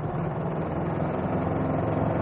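Aixam Mega Multitruck's small Kubota two-cylinder diesel engine running steadily as the van drives along, with its note and level rising slightly about halfway through.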